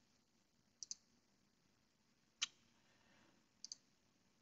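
Near silence with a few faint, short clicks: a quick double click about a second in, a sharper single click midway, and another quick double click near the end.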